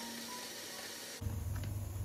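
Quiet room hiss, then a little past a second in, a steady low hum with light plastic clicks as the food processor's bowl is handled on its base.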